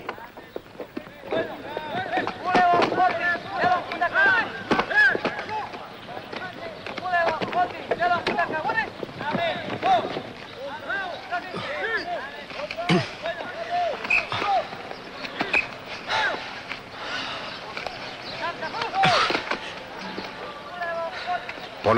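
Several men give short shouts and calls while climbing an obstacle course, mixed with scattered thumps and knocks of boots and hands on the wooden and metal obstacles.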